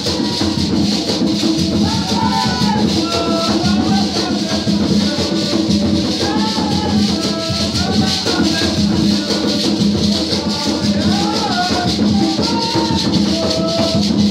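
Afro-Brazilian ritual dance music: drums and shaker rattles keep a steady, driving rhythm, with voices singing a melody over them.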